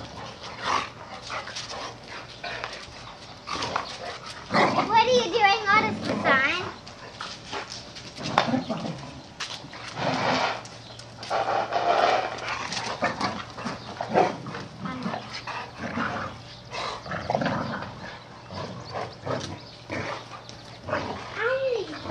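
Two dogs play-fighting, making bursts of vocal noise as they wrestle. The loudest stretch is a wavering call about five seconds in, with more around ten to thirteen seconds and a short rising-and-falling call near the end.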